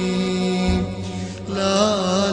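Arabic Shia devotional chant (latmiya): voices held on one steady note, with a deep thump about a third of the way in. Near the end a solo male voice comes in with a wavering, bending melody.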